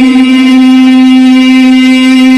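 A male Quran reciter's voice holding one long vowel on a steady pitch, the drawn-out note of tilawat.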